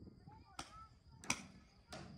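Three sharp paintball shots, about two-thirds of a second apart, the second the loudest.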